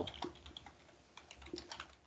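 Computer keyboard typing: a quick, irregular run of light keystrokes.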